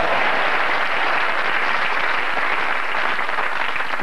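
Studio audience applauding, a steady, even clatter of clapping that holds without a break.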